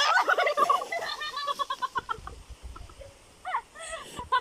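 People laughing in a quick burst of high, rapid cackles that dies down about two seconds in, with a short laugh again near the end.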